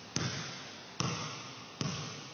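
A leather basketball bounced three times on a gym floor, each bounce a sharp smack followed by an echoing tail.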